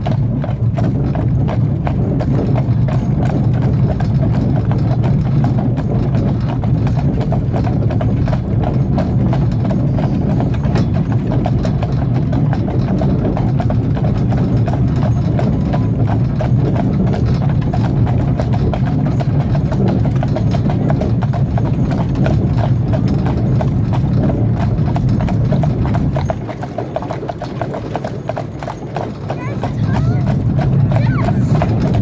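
Hooves of a pair of horses clip-clopping at a walk on a paved road, over a steady low rumble that drops away for a few seconds near the end.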